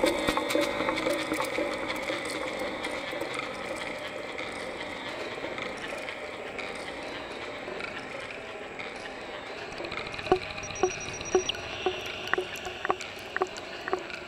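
Generative modular-synth music driven by a houseplant's biodata through an Instruo Scion module. A dense, sustained wash of sound thins out partway through, then short pitched notes come back about ten seconds in, roughly two to three a second.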